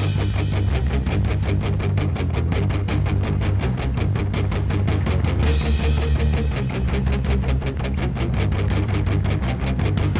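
Street-punk (Oi!) band playing an instrumental intro: distorted electric guitar, bass and drums at a fast, steady, driving beat.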